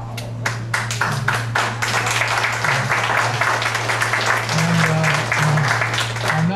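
Audience applauding: a few scattered claps that build within a second into steady applause, over a steady low hum.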